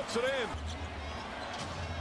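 A basketball being dribbled on a hardwood court from the game broadcast, over a steady low rumble of arena crowd noise.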